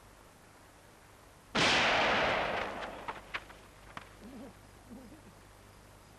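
A single gunshot fired into the air about a second and a half in, with a long echoing tail that dies away over about a second, followed by a few faint clicks.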